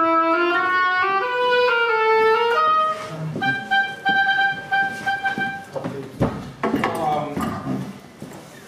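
Solo oboe playing a quick phrase of changing notes, then holding one long high note for about two seconds before stopping. A knock follows, and a man's voice is briefly heard near the end.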